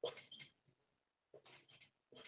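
Faint short squeaks and scrapes of a marker pen writing letters on a whiteboard, coming in small separate strokes.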